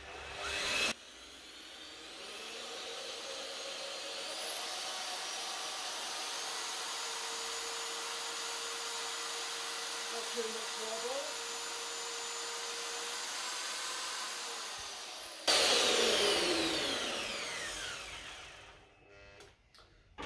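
Handheld electric paddle mixer running unloaded with a homemade steel mixing paddle over a metre long: the motor whine builds up over the first few seconds and then runs steady. Near the end it gets louder, then falls in pitch and dies away as the motor winds down.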